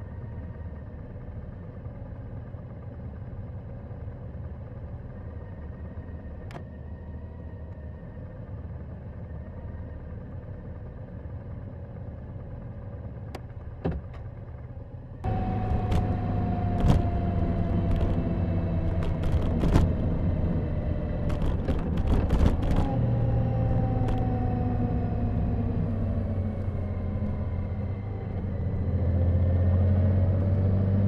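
Motorcycle engines idling at a standstill. About halfway, an abrupt change to a Honda GL1800 Goldwing's flat-six running under way at road speed, louder, with wind and road noise and scattered sharp clicks. Its note falls slowly as it eases off, then rises near the end as it accelerates.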